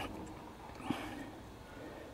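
Faint handling noise with one small click about a second in, as a finger pushes at the compressor wheel inside a Yanmar 4LH turbocharger's intake. The wheel is stiff and will not turn by hand, a sign of the turbo's poor condition.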